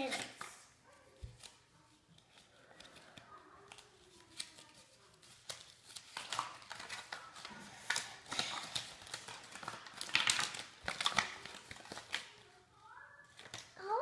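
Small plastic toy packets crinkling and tearing as they are pulled open by hand, in irregular crackles that grow busier and louder about halfway through.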